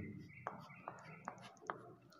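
Four faint taps of chalk on a chalkboard, evenly spaced about 0.4 s apart.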